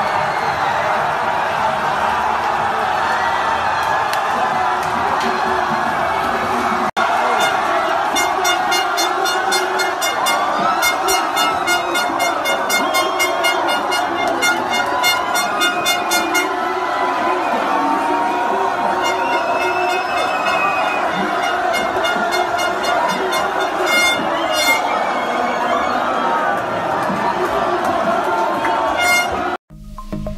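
A packed crowd of football fans shouting and cheering in celebration, with horns blowing in rapid repeated blasts from about seven to sixteen seconds in and again briefly later. The sound breaks off for an instant about seven seconds in and cuts off just before the end.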